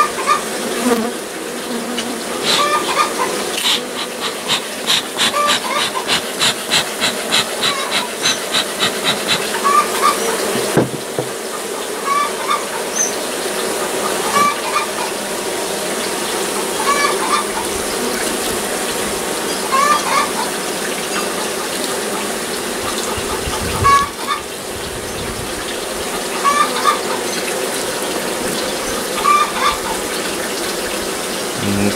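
Honey bee colony buzzing steadily around its opened comb, with a hen giving short complaining calls every two or three seconds in the background. A rapid run of clicks, about four or five a second, comes from about four to nine seconds in.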